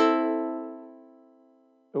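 Cordoba ukulele strummed once: a single chord rings out and fades away over about a second and a half.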